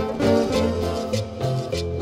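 Cumbia music from a small band: plucked acoustic guitars over bass and drums, keeping a steady dance beat.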